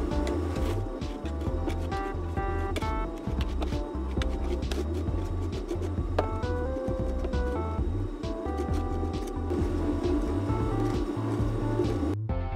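Background music: a melody of short stepped notes over a repeating bass line.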